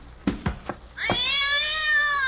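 A cat's single long, drawn-out meow starting about halfway in, rising at first and then slowly falling. It is preceded by a few light knocks.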